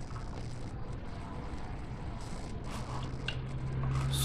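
Quiet room tone: a low steady hum and faint hiss, with a few faint clicks about three seconds in.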